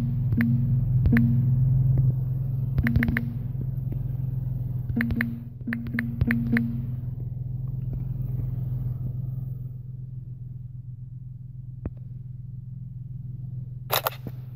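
Fingertip taps on a smartphone's on-screen keyboard in several quick clusters of short clicks, some with a brief low buzz, over a steady low hum that drops after about nine seconds. A sharper click comes right at the end as the phone camera takes a picture.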